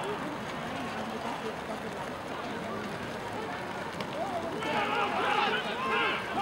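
Indistinct shouts and calls from rugby players at a lineout, over steady outdoor noise. About four and a half seconds in, the voices get louder and more crowded as play breaks out.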